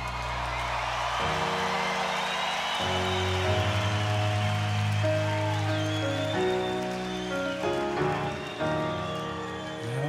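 Live band playing a slow instrumental passage of held chords that change every second or so over a bass line, with crowd noise (cheering and applause) spread underneath, strongest in the first half.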